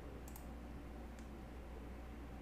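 A few faint, sharp clicks (a quick pair about a third of a second in, then one more a little after a second) over a low steady hum.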